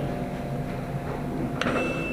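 Room noise with a steady low hum, then a click about one and a half seconds in followed by a short high tone.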